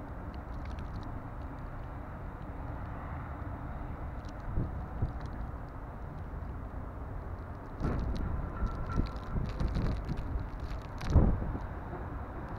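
Snowstorm wind blowing steadily, gusting louder about two-thirds of the way in and peaking just before the end.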